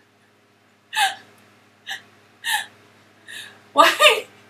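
Stifled laughter: a run of short, breathy gasps through a hand over the mouth, about half a second to a second apart, getting louder near the end.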